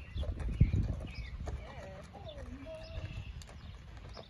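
Horse's hooves thudding on packed dirt at a walk, an uneven run of soft hoofbeats.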